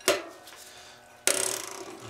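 A sharp metal click, then about a second and a quarter in a loud grinding crackle lasting under a second: a Shimano cassette lockring breaking loose under a wrench on the lockring tool while a chain whip holds the cassette, its serrated face grating against the top cog.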